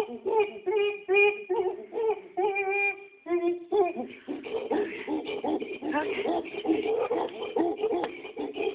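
Chimpanzee hooting during a display: a run of short pitched hoots, about two or three a second, breaks off briefly after about three seconds and returns as a denser stream of overlapping calls.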